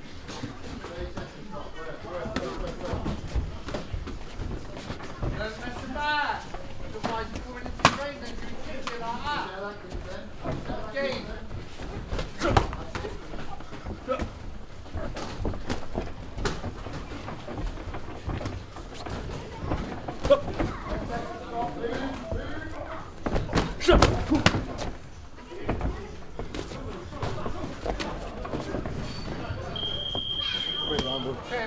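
Sparring impacts: punches and kicks landing on boxing gloves and shin guards as irregular sharp thuds and slaps, the loudest a few seconds apart, over voices in a large echoing gym. A steady high electronic beep starts near the end.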